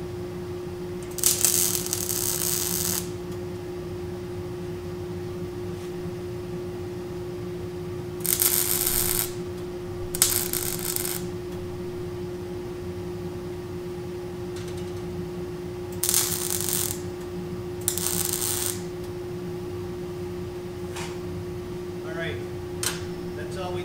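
MIG welder tack-welding steel pieces together: five short bursts of arc, each one to two seconds long, two close together in the middle and two near the end, over a steady hum.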